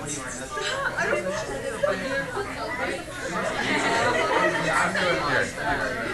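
Classroom chatter: many students talking over one another at once while working problems, with no single voice standing out. It grows louder about halfway through.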